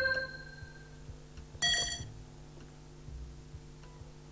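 Electronic quiz-game signal tones. A short chime at the start dies away over about a second as a colour tile is entered. About 1.6 s in comes a louder, brighter beep lasting under half a second, as the next slot on the board is marked wrong. A faint regular ticking runs underneath.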